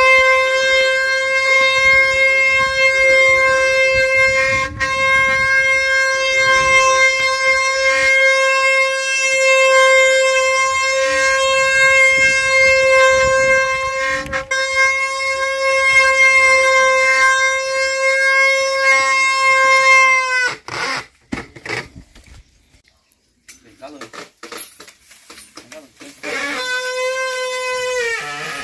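Wooden Brazilian ox cart (carro de boi) 'singing' as it rolls: the wooden axle turning in its wooden bearing blocks gives a loud, steady, horn-like tone. The tone holds for about twenty seconds, drops slightly in pitch as it stops, and starts again shortly before the end as the cart moves once more.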